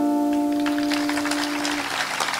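Final chord of a live song on acoustic guitar ringing out and fading, its last note dying away near the end. Audience clapping starts about half a second in.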